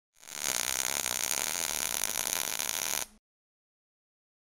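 Channel logo intro sound effect: a dense, steady noise, brightest in the high range, that builds up over the first half second and cuts off suddenly about three seconds in.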